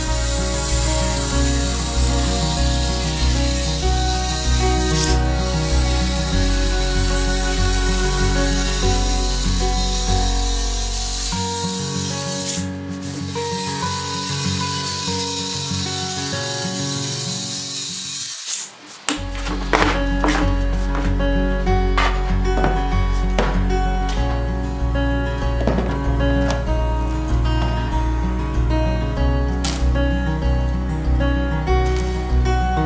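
Cordless circular saw with a 40-tooth blade cutting through a thin polycarbonate sheet, a steady high hiss with a short break partway, stopping after about eighteen seconds. Background music plays throughout.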